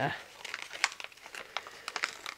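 Packaging crinkling with scattered sharp crackles as a sticker is picked at and peeled off it by hand.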